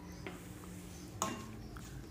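Quiet kitchen with a faint steady hum, and one light click about a second in from a utensil against a nonstick pan.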